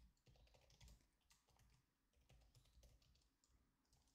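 Very faint typing on a computer keyboard, a scatter of soft key clicks barely above silence.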